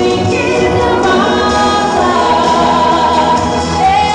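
A woman singing a gospel song into a microphone over musical accompaniment, holding a long note through the middle.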